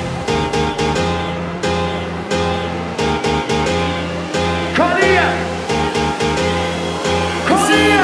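UK hardcore dance music from a live DJ mix, with a steady pounding beat under sustained synth chords and bass. A rising pitch sweep cuts through twice, about five seconds in and again near the end.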